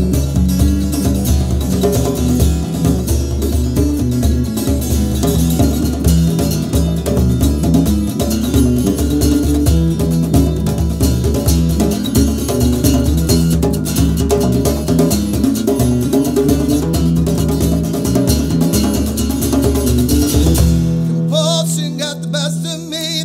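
Instrumental passage of a live acoustic trio: strummed acoustic guitar, djembe hand drum and electric bass guitar playing together in a steady rhythm. Shortly before the end the drum and bass drop out, leaving a held chord.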